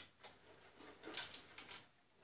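A few faint, light metallic clicks as a steel bolt is handled and fitted through a bracket into a sheet-steel fender, most of them a little after a second in.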